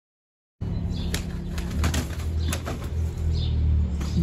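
Two pigeons fighting on a lawn, their wings flapping and slapping in a few sharp claps over a steady low hum. The sound starts about half a second in.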